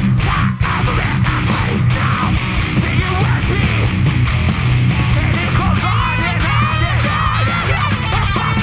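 Live metalcore band playing loud heavy music: distorted electric guitars, bass and drums, with a high, wavering line over the riff in the second half.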